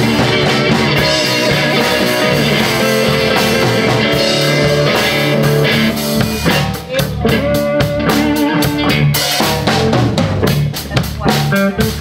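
Live blues band playing an instrumental stretch: electric guitars over a drum kit. About six seconds in, the full groove drops away to sharp, separated hits with short gaps between them.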